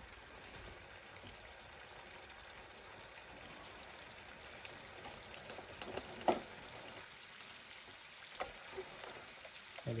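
Curry sauce with chicken pieces simmering in an aluminium pan on a gas hob as it is brought to the boil: a faint steady bubbling hiss broken by a few louder pops, the loudest a little past the middle.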